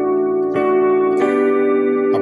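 A 'keys' keyboard preset from the KeyStage iPad synthesizer app sounding sustained chords, with new notes struck about half a second and just over a second in.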